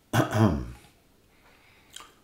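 A man clearing his throat once, short and voiced. A faint click comes near the end.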